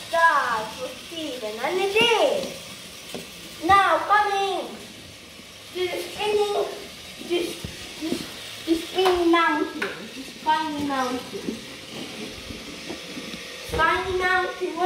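A voice making short wordless 'oh' exclamations, about six of them, each sliding up and down in pitch, with faint clicks between them.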